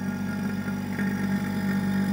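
Electric vacuum pump running with a steady hum, pulling vacuum through a gauge block to leak-test a worn bore in an automatic transmission's mechatronic valve body.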